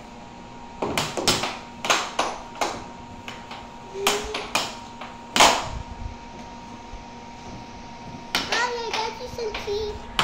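Air hockey game: a plastic puck and mallets clacking in a string of sharp, irregular knocks as the puck is struck and rebounds off the table's rails, over a steady hum.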